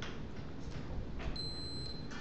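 A high, steady beep-like tone lasting about two-thirds of a second, starting a little past the middle, over quiet room noise.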